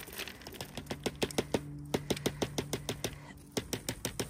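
Chunks of cut butternut squash tipped from a plastic bowl into a plastic bucket, landing in a quick, irregular run of taps and clicks.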